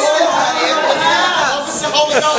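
Several people's voices talking and calling out over one another, loud and steady, in a large room.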